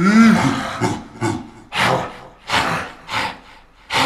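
A man's voice making non-speech noises into the microphone: a short pitched groan at the start, then four short breathy hisses about two-thirds of a second apart.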